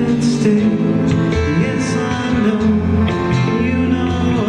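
Live country band playing, with guitars strummed and picked over a bass line.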